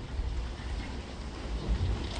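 A pause with no speech, holding only a steady low rumble and faint hiss of room noise picked up by the lectern microphones.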